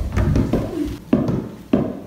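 Small balls dribbled on a hardwood floor, a short bounce knock roughly every half second to second.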